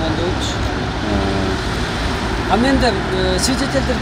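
Steady low rumble of city street traffic, with people talking over it.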